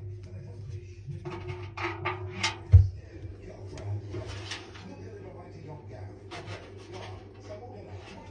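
A hand rubbing and knocking on the perforated stainless-steel drum of a front-loading washing machine at a bare paddle mount, with one dull thump near three seconds in, over a steady low hum.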